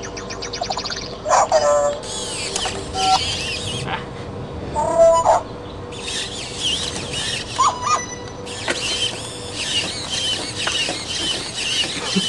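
Hacked toy robot dog set off by marker fumes at its VOC sensor. It gives short electronic chirps and squeals a few times, and its leg motors whir in stretches as it moves, with a steady low hum under the first few seconds.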